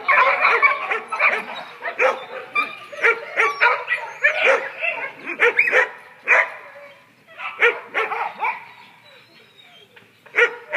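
Dogs barking at play in quick, repeated short bursts, thinning out after about six seconds, with a few more barks around eight seconds.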